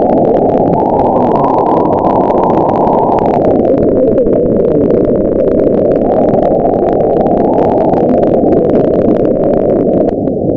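Shortwave receiver static in AM mode on 6180 kHz: a loud, steady, muffled hiss with no station audible. The hiss sounds duller about three and a half seconds in.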